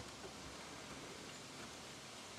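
Faint, steady background hiss with no distinct sound event.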